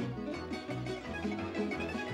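Lively folk dance music played on string instruments, plucked strings and fiddle over a steady, pulsing bass beat.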